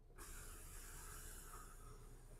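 Faint, steady hiss-like whir of a power sunroof motor opening the glass, starting just after the overhead button is pressed.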